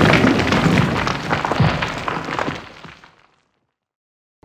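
Logo-animation sound effect of stone crumbling and shattering: a dense rush of rubble and many small cracking impacts, dying away to nothing a little over three seconds in.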